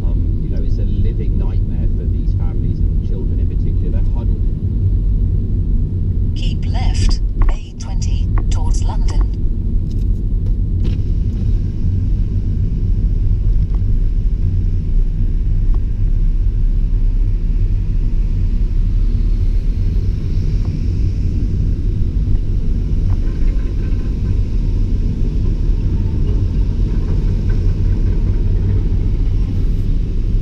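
Steady low rumble of a car's engine and tyres heard from inside the cabin while it creeps along a wet road. A short cluster of sharper crackling sounds comes about a quarter of the way in.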